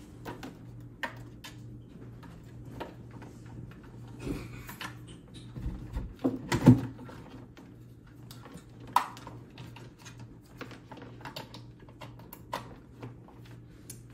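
Scattered clicks, knocks and rustles of cables and a plastic power adapter being handled and plugged in, over a faint steady low hum. The loudest knock comes a little under halfway through.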